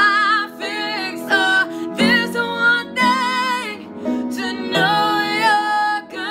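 Two women singing a slow worship song together, the voices wavering with vibrato, over a guitar accompaniment.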